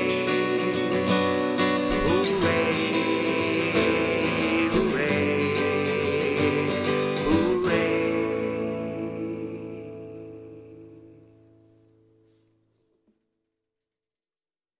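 Acoustic guitar strumming the song's closing chords, then a last strummed chord about seven and a half seconds in that rings out and fades away to silence.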